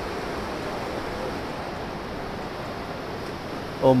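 Fast mountain river rushing over rocky rapids: a steady, even noise.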